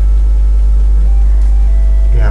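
Soft background music with faint held tones that change pitch about a second in, over a loud, steady low hum.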